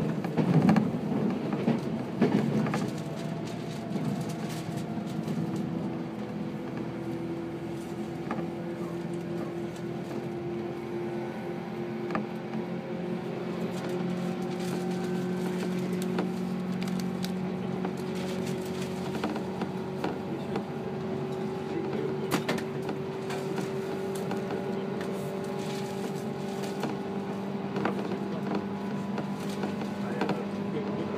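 A 185 series electric train heard from inside the carriage while running: a steady hum from the motors and gearing that rises slowly in pitch as the train gathers speed, over the rumble of wheels on the rails. There is a louder burst of running noise in the first few seconds.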